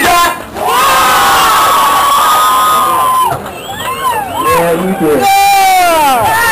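Concert crowd cheering, with several people whooping and yelling over the noise. One long, high whoop is held for about two seconds near the start.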